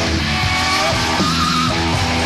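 A heavy rock band playing live: distorted electric guitar over bass and drums, with a high note held with a wavering vibrato a little past the middle.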